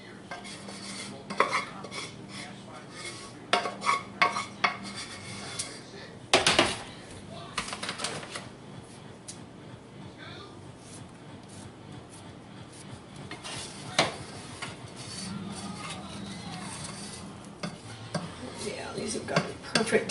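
Spoons scraping and clinking against a saucepan as thickened praline candy is scooped out and dropped by spoonfuls. The clinks come irregularly, with the sharpest knock about six seconds in, over a low steady hum.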